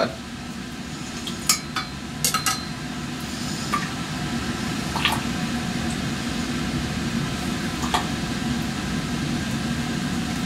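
Laboratory glassware and a metal clamp being handled, giving a handful of sharp clicks and taps spread through the first eight seconds. Under them runs a steady rushing noise with a low hum.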